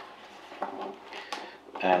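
Faint rustling and a few light taps of a cardboard product box being handled and opened. A man's voice starts near the end.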